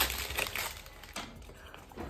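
Gift wrapping paper crinkling and tearing in short bursts as a small gift box is unwrapped by hand, mostly in the first half, with one more rustle about a second in.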